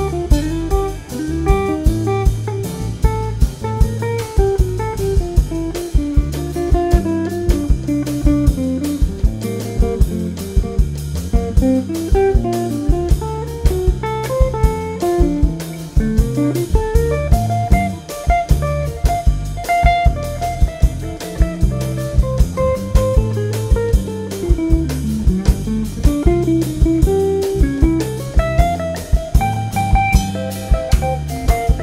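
Live instrumental jazz from a small band: an archtop hollow-body electric guitar plays a single-note melodic line over electric bass and drum kit, with regular sharp hits from the drums.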